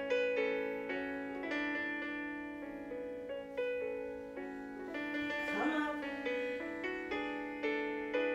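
Solo piano music of the kind played for ballet class, notes struck in a fairly steady rhythm, starting right at the beginning.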